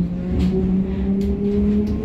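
LEW MXA suburban electric multiple unit heard from inside the passenger car: a steady electric motor whine climbing slowly in pitch as the train gathers speed, over a low rumble from the running gear.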